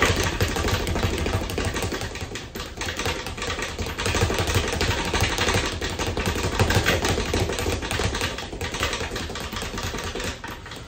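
Speed bag being punched continuously: a rapid, unbroken rattle of the bag rebounding off the round platform above it.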